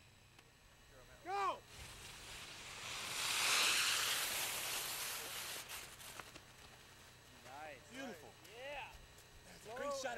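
Short rising-and-falling shouted calls from several people, with a rushing hiss that swells for a few seconds in the middle and is the loudest sound.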